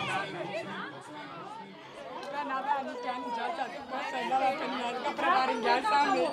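Several people talking at once in overlapping chatter, no single voice standing out, growing a little louder near the end.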